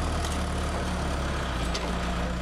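John Deere 315SJ backhoe loader's diesel engine running steadily with a low, even hum.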